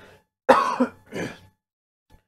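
A man coughing to clear his throat, twice: a sharp, loud cough about half a second in and a weaker one just after.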